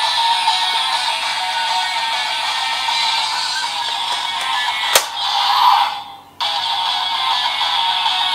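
DX Seiken Swordriver toy belt playing its electronic standby music loop through its small built-in speaker, tinny and without bass. There is a sharp click about five seconds in, and the music briefly drops out around six seconds before starting again.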